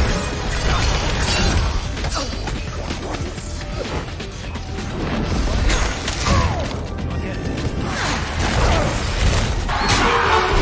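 Animated-film action soundtrack: dramatic score mixed with fight sound effects, crashes and sweeping whooshes of ice magic.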